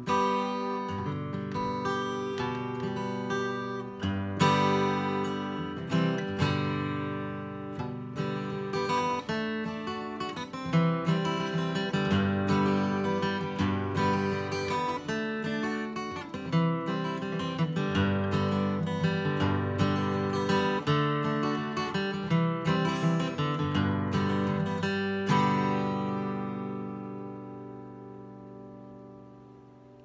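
Handmade acoustic guitar with sycamore back and sides and a spruce top, played solo in a run of chords and notes. A final chord rings out and slowly dies away over the last few seconds.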